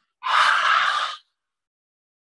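A person breathing out fully and audibly: one long, breathy exhale lasting about a second.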